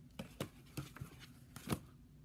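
A few short rustles and taps from a small hardcover book being handled and its pages flipped, the loudest tap near the end.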